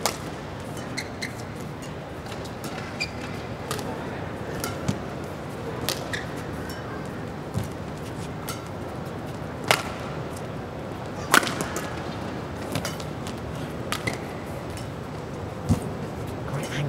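Badminton rally: racket strikes on the shuttlecock every second or so, each a sharp crack, some much louder than others, over steady arena background noise.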